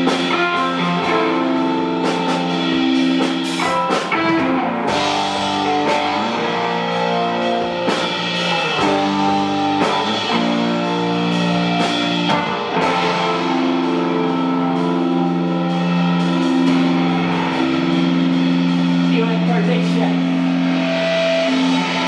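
Live rock band playing: electric guitar sustaining notes over a drum kit, loud and steady.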